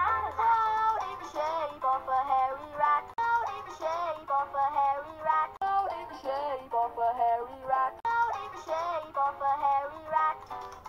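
Animated children's-show characters singing a bouncy rhyming song over backing music, the sung line pausing briefly twice between phrases.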